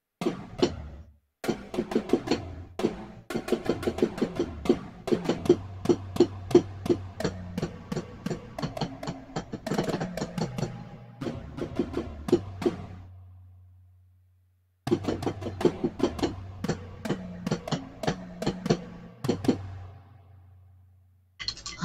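Drum hits played live with drumsticks on an electronic drum pad, a quick steady run of strikes over a low sustained synth tone. The playing dies away about thirteen seconds in, falls silent for a moment, then starts again.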